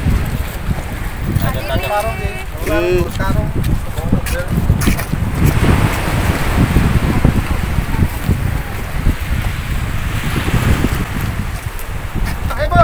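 Wind buffeting the microphone outdoors with a steady low rumble. People talk briefly in the background about two seconds in.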